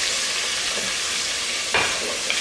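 Buttermilk-battered chicken thighs frying in hot oil in a pan: a steady, dense sizzle. Near the end comes one sharp clack.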